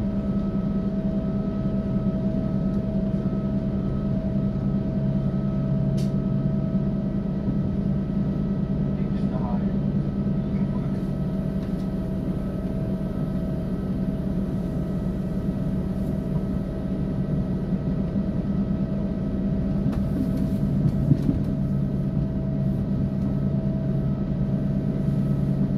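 Steady drone of an ÖBB class 5047 diesel railcar under way, heard from inside the passenger cabin: an even engine and transmission hum with a few constant tones over a low running rumble.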